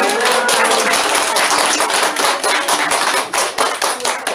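Audience applauding, many hands clapping at once; the clapping thins out near the end.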